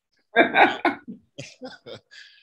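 A man coughing: three strong coughs in quick succession, then several weaker short coughs.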